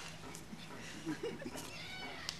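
A faint meow-like cry with quiet voices underneath.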